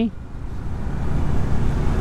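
Motorbike engine and road noise heard from on board while riding, a low rumble that grows steadily louder through the two seconds.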